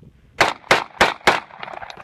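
Walther P99 9mm pistol fired four times in quick succession, about three shots a second, each shot followed by a short echo.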